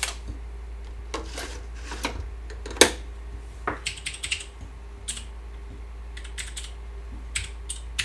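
Keystrokes on a computer keyboard, typed in short irregular runs, with one sharper, louder click about three seconds in, over a low steady hum.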